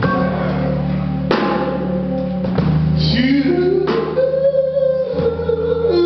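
Live band playing, with a sung vocal line over held bass notes, drum kit and electric guitar. The voice rises and holds a long note from about halfway through.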